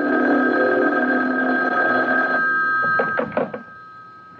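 A telephone bell rings in one long ring of about three seconds, a steady high tone, as a radio-drama sound effect. A few sharp clicks follow near the end as the receiver is picked up.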